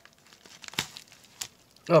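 Faint crinkling and rustling of a padded mailer envelope being handled, a few scattered crackles.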